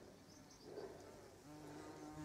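Near silence, with a faint, steady insect buzz in the second half.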